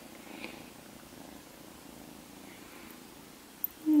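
Small tabby kitten purring steadily, with a woman's short hummed "mm" near the end.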